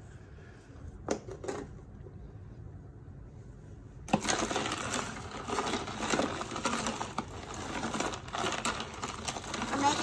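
A spoon stirring and knocking ice cubes in water in a plastic tub: busy, irregular clinking and clattering that starts suddenly about four seconds in, after a couple of faint clicks.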